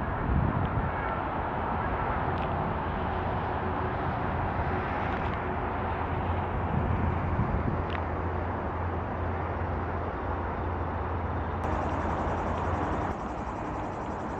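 Steady hiss and rumble of road traffic from a nearby highway, recorded outdoors; the noise dips slightly near the end.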